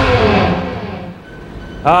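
Theme music ending: the last ringing chord fades out over about a second, then a man's voice starts near the end.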